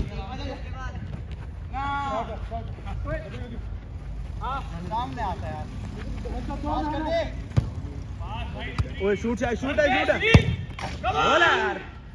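Players shouting and calling to each other across a football pitch, with a few sharp thuds of the football being kicked, the loudest about ten seconds in.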